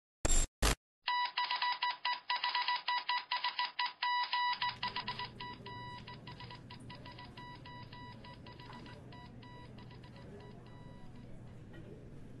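Computer error beeps: two short electronic bursts near the start, then a rapid run of short high beeps, several a second, that thin out and fade over several seconds. A steady low electrical hum of office room tone remains underneath.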